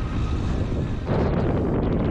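Wind buffeting the microphone of a moving vehicle, a low rumbling rush of air and road noise that gets louder about a second in.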